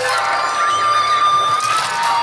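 Loud yosakoi dance music with many voices shouting and cheering over it.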